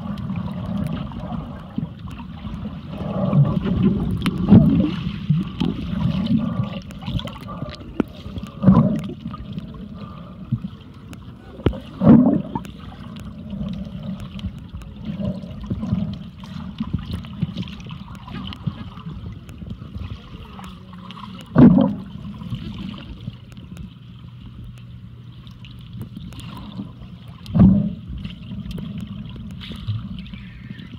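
Muffled underwater sound picked up by a submerged camera: a steady low rush of water, broken by four short, louder surges spread through it.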